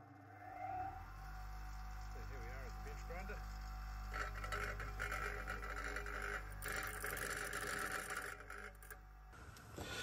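A 6-inch Ryobi bench grinder motor starts up and runs with a steady hum. From about four seconds in, the steel tang of a Jacobs chuck's Morse taper is ground against the wheel with a rough, rasping grind, shortening the taper. The sound stops about a second before the end.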